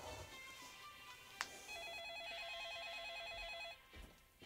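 Electronic telephone ringer trilling, one ring of about two seconds starting a little before halfway, with a short click just before it.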